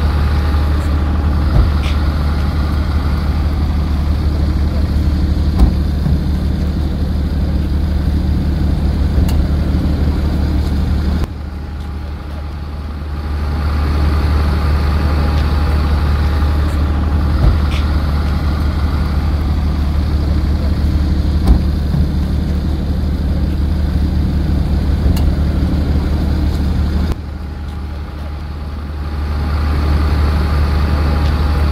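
A steady low mechanical hum with faint steady tones above it. It drops sharply twice, about 11 and 27 seconds in, and builds back up over a couple of seconds each time.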